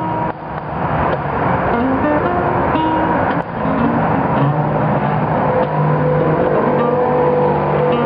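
Acoustic guitar played in a blues style, its notes heard over a steady wash of highway traffic noise. The sound fades in over the first second.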